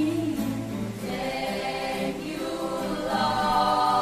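A choir of young voices singing a worship song together, growing louder about three seconds in.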